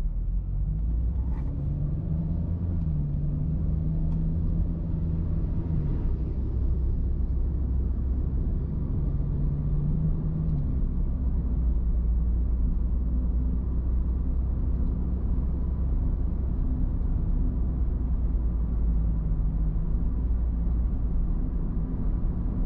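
A car driving in town: a steady low road and tyre rumble, with an engine hum that swells a few times as the car moves off and picks up speed.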